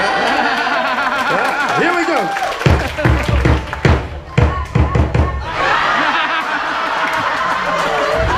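A run of drum beats for about three seconds in the middle, an audience volunteer answering the MC's drum call, with audience voices around it before and after.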